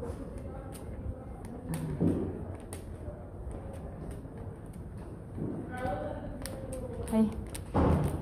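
Footsteps on a hard tiled hallway floor, roughly one thud a second, in a large echoing corridor, with people's voices in the hallway and a voice calling "hey" near the end.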